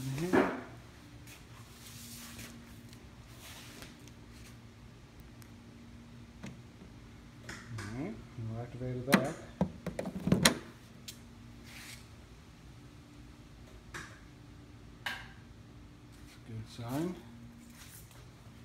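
A Tesla charging connector being handled and pushed into the car's charge port, with a few sharp clicks and knocks, the loudest about nine to ten seconds in as the plug seats. A steady low hum runs underneath.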